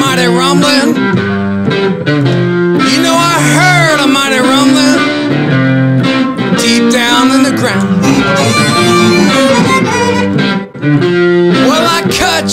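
Electric blues played by a duo: electric guitar with amplified blues harmonica, the harmonica played cupped to a hand-held bullet-style microphone, with bending notes. The music drops out briefly for a moment near the end.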